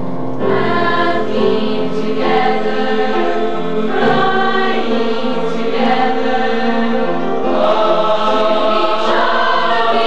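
A school choir singing in chorus, the voices coming in strongly about half a second in.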